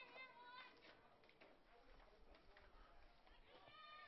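Near silence: faint, distant voices from the ballpark, heard near the start and again near the end.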